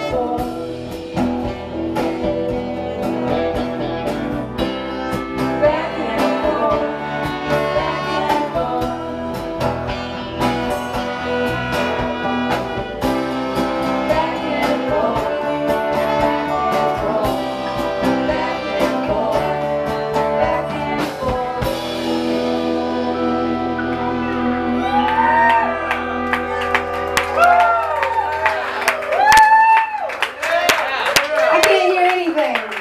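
A live band with electric guitar, bass and drums plays and a woman sings. About two-thirds of the way through, the drums stop and a final chord is held under her sliding, drawn-out vocal notes. Clapping starts near the end.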